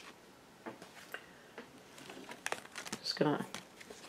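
Tarot cards being handled and slid over a cloth-covered table as a card is picked from a fanned-out deck: a scattering of soft clicks and rustles, with a brief murmur of voice about three seconds in.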